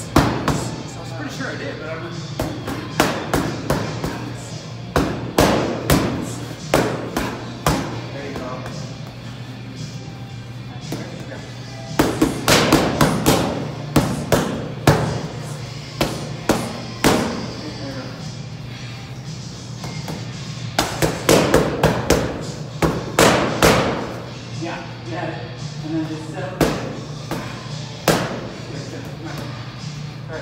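Boxing gloves striking focus mitts in quick combinations of several punches, with pauses of a few seconds between the flurries. Background music plays throughout.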